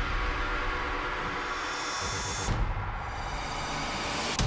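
Electronic theme music for a TV sports show's opening titles, with a high swelling whoosh that cuts off abruptly about two and a half seconds in.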